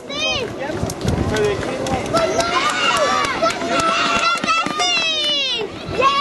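Children's high voices calling out and chattering among a crowd of spectators, densest in the second half, with sharp ticks scattered through.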